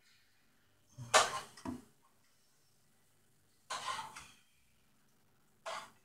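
Handling noise from an opened tablet during a battery swap: three short scraping, rustling bursts as its plastic case and battery are moved, the loudest about a second in, others near four seconds and near the end.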